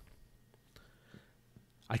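Near silence in a pause between a man's words: faint room tone with a soft click or two, then his voice starts again at the very end.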